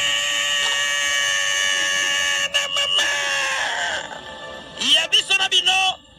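A single long held high note, rich in overtones, lasting about three and a half seconds before it trails off, followed near the end by short voice-like fragments.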